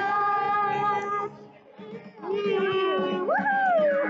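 High-pitched singing in long held notes, breaking off about a second in and resuming with a note that jumps up and slides back down near the end.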